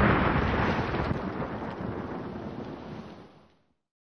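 Dying tail of an explosion sound effect: a dense noise that fades steadily and is gone about three and a half seconds in.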